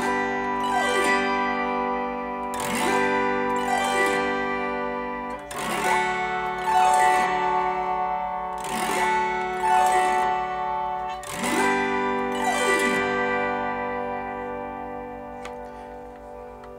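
Chromaharp autoharp strummed with no reverb: a series of chord strums a second or two apart, each sweeping across the strings from high to low and ringing on, with a bright, thin tone. The last chord dies away near the end.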